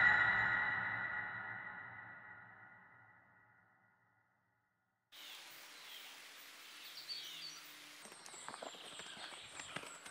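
A loud, pitched musical sting ringing out and fading to silence over about three seconds. After a short silence, woodland ambience with birds chirping comes in, and from about eight seconds in there are footsteps on a dirt path.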